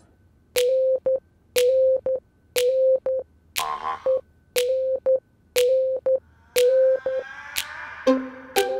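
Comic background music cue: a short, sharp tone at the same pitch repeats about once a second, each followed by two quick blips, in a steady rhythm.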